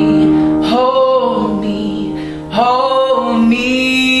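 Male voice singing over upright piano accompaniment. Two sung phrases, each opening with an upward slide, start about a second in and again about two and a half seconds in, over sustained piano chords.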